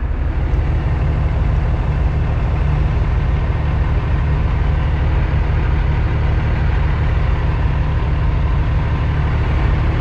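Cummins ISX diesel engine of a 2008 Kenworth W900L, heard from inside the cab, running steadily at low revs.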